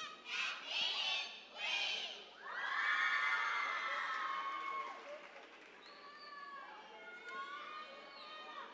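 Children's voices shouting and cheering: two short high-pitched shouts, then a long drawn-out cheer that fades into scattered calls.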